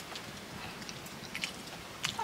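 A person eating noodles: chewing and sucking in a noodle strand, with a few short wet mouth clicks, several close together about one and a half seconds in.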